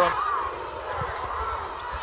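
Basketball game sound: a ball thudding once on the hardwood court about a second in, over steady arena background noise.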